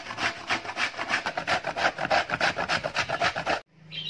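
Jaggery being grated on a stainless steel box grater: rapid, even rasping strokes, one after another, stopping suddenly near the end.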